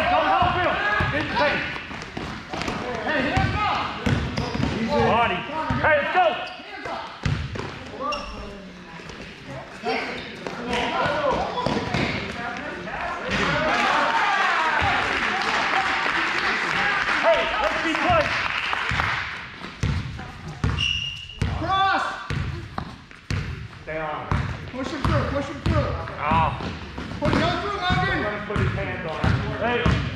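A basketball is dribbled on a hardwood gym floor, with repeated short bounces among shouting voices in a large hall. About halfway through, a stretch of louder crowd noise lasts several seconds.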